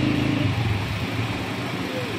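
A vehicle engine runs steadily in the street, heard as a low hum under general traffic noise, easing off slightly over the two seconds.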